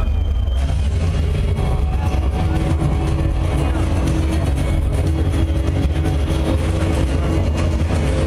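Loud, boomy low rumble from an open-air festival PA, overloading the recording microphone. Held musical notes come in about a second and a half in: a slow intro building before a metal band's set.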